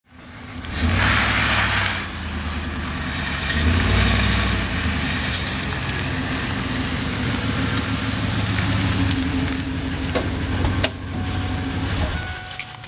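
Van engine running with a steady low rumble, briefly louder in the first couple of seconds, and a single sharp click near the end.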